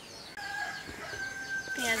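A rooster crows in the background in one long steady call. Near the end, sliced onions are dropped into hot oil in an aluminium pot and start sizzling loudly.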